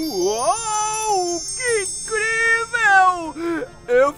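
A voice making drawn-out, wordless exclamations that slide up and down in pitch, over the fading shimmer of high sparkly chimes from a magic effect.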